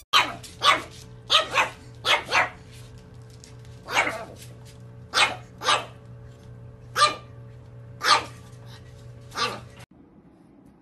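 Pug puppy barking: about a dozen short, sharp barks at irregular gaps, several in quick pairs.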